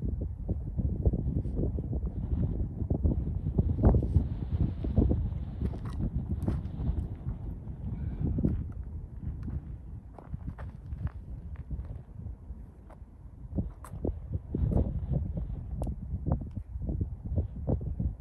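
Wind buffeting the microphone with an uneven low rumble, over scattered footsteps and small crunches on gravel and dirt and a few light clicks. No gunshot is heard.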